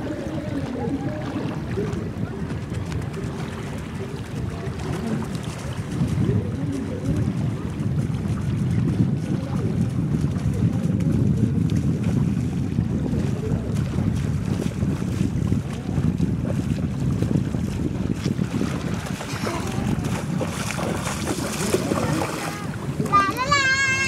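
Wind buffeting the microphone, a low rumbling that grows louder about six seconds in, over the wash of small waves in shallow sea water.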